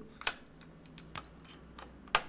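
A few small, sharp plastic clicks and taps as a battery is fitted into an electric guitar's battery compartment.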